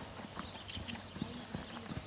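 Hoofbeats of a horse trotting on sand: a run of short, soft thuds.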